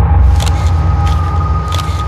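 Steady low rumble of outdoor vehicle ambience, with a few sharp clicks and a faint steady high whine.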